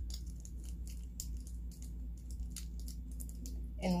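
Clear plastic tape crinkling and crackling in a string of small, irregular clicks as it is wrapped around the handles of two plastic spoons. A steady low hum runs underneath.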